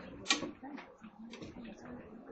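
Indistinct chatter of several voices in a small classroom, with a brief sharp knock about a third of a second in.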